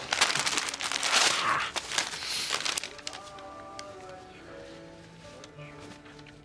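Wrapping paper rustling and crumpling loudly as a present is unwrapped, for about three seconds. Soft background music with held notes follows.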